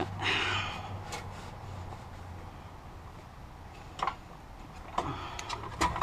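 A cloth rag rustling as it wipes, then a sharp knock and several clicks of the plastic fuel pump module being handled against the fuel tank's access opening.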